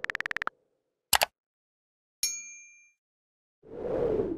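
Edited end-card sound effects: a quick run of about twenty ticks in the first half second, a short pop about a second in, a bright chime just after two seconds that rings out for about half a second, and a swelling whoosh near the end.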